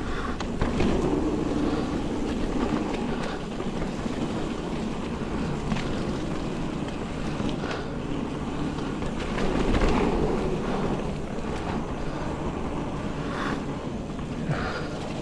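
Mountain bike rolling along a wet dirt singletrack: tyre and frame rumble over the ground with wind on the microphone and a few sharp clicks and rattles from the bike, swelling louder about ten seconds in.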